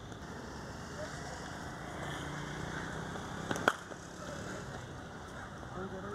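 Steady outdoor practice-ground background with faint distant voices. About three and a half seconds in, one sharp crack of a cricket ball striking the bat in the nets.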